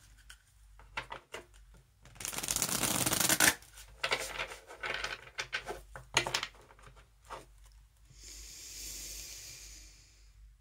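A deck of tarot cards being shuffled by hand: scattered card taps and flicks, then a loud, dense rustle lasting over a second about two seconds in, and more shuffling rustles and clicks after it. A softer, steady hiss follows near the end.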